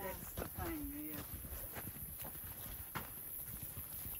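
Footsteps and trekking-pole taps on a dirt hiking trail: a few faint, irregular clicks and crunches.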